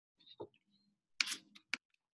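A short noisy sound, then two quick sharp clicks in the second half, from a computer mouse or key being pressed to advance a presentation slide.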